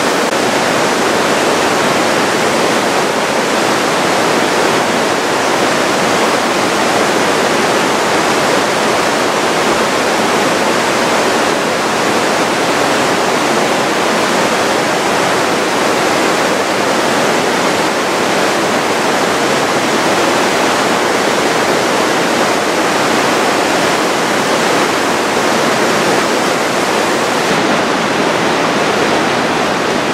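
Fast glacial river water rushing through a narrow rock gorge: a loud, steady, unbroken rush of white water.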